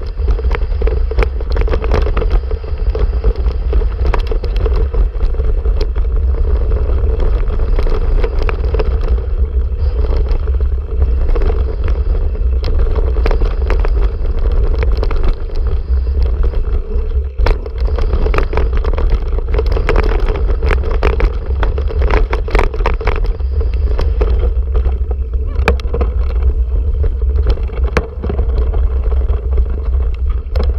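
Heavy wind buffeting on the microphone of a handlebar-mounted camera as a 2014 Breezer Repack Team mountain bike descends a dirt trail at speed, with tyre noise and frequent sharp clicks and knocks from the bike rattling over bumps.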